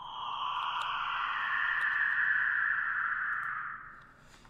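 Downlifter sound-effect sample playing back: a sustained swell of filtered noise whose bands slide down in pitch, fading out near the end.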